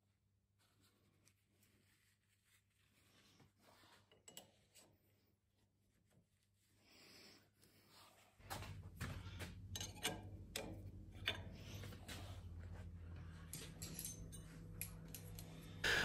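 Near silence for about the first eight seconds, then faint scattered clicks, knocks and rubbing from metal tooling being handled on a lathe, over a low steady hum.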